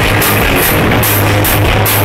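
Hard rock band playing live and loud: distorted electric guitar, bass guitar and a drum kit with crashing cymbals.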